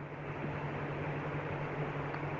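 Steady background hiss with a low, constant hum.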